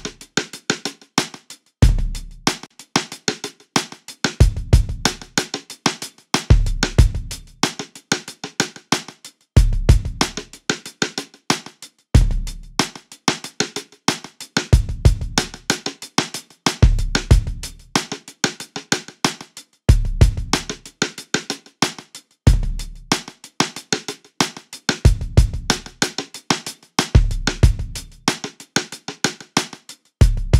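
A programmed drum loop from a sampled drum kit plays, with deep kick hits every two to three seconds and fast snare and hi-hat hits between them. It runs through the smart:comp spectral compressor at about 3:1 ratio.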